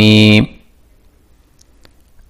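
A man's chanting voice holds the final syllable of a Sanskrit tarpanam mantra on one steady note for about half a second and stops. Quiet room tone follows, with a single faint click near the end.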